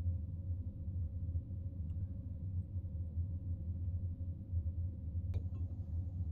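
A low, steady hum with a faint steady tone above it, broken by one sharp click about five seconds in.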